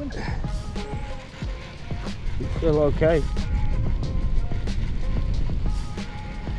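Background music with steady held notes, with a brief voice about three seconds in.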